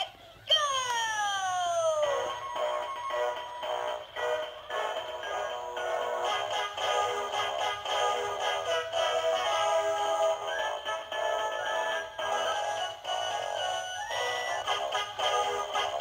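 Battery-powered Peterkin animated plush Santa and snowman toys playing a Christmas carol through their built-in speakers, electronic music with synthesized singing. It opens with a falling swooping tone about half a second in before the tune settles in.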